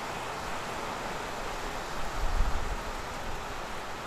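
Steady outdoor background hiss, with a brief low rumble about two seconds in.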